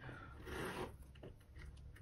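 Faint rustling and scraping of a leather handbag being handled as its flap is held open, loudest in the first second, then a few faint ticks.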